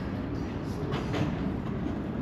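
Open-air walkway ambience: a steady low rumble, with a few faint taps about a second in.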